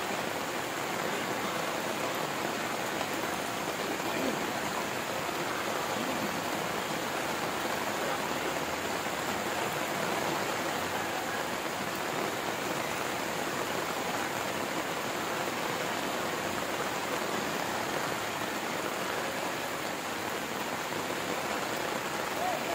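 Heavy rain falling steadily on and around a corrugated metal roof, a constant, even hiss with no break.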